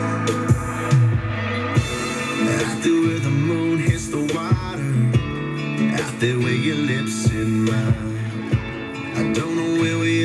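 Country music playing on FM radio: a guitar-led passage with a steady drum beat and little or no singing.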